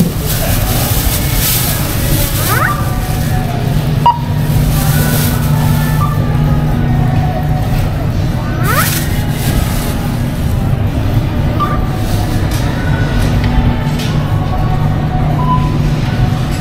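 Supermarket checkout ambience: a steady low hum with faint background music and distant voices. A few short beeps from the self-checkout registers sound over it, and a thin plastic produce bag rustles now and then.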